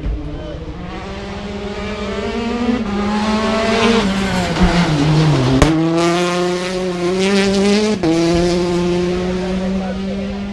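Rally car's turbocharged four-cylinder engine at full throttle, its note climbing and growing louder. About halfway through the pitch dips as the engine comes off the throttle, then it picks up again with a sharp crack and holds high, with a gear change near the end.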